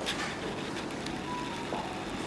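Steady low mechanical hum of room equipment, with a brief knock at the start and a short faint tone a little past the middle.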